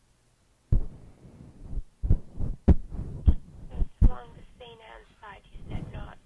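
A string of dull, heavy thumps close to the microphone, about half a second to a second apart, then a voice heard through a telephone line from about four seconds in.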